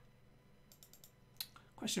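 A few quick light clicks of computer keys, four in close succession just under a second in and one more shortly after, followed near the end by a man beginning to speak.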